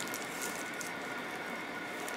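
Quiet room tone: a steady hiss with a faint, thin high-pitched hum, and no distinct handling sounds.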